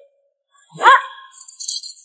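An edited-in whip-pan transition effect: about a second in, a short, sharp yelp rises steeply in pitch, followed by a high, hissing, shimmering swish lasting about a second.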